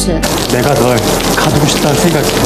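A young man's voice speaking a line of dialogue in Korean over a loud, steady rushing hiss.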